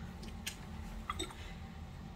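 Quiet room with a steady low hum and two faint, soft clicks, about half a second and just over a second in.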